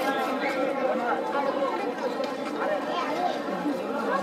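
Many voices chattering at once, overlapping at a steady level with no single speaker standing out: crowd chatter around the track.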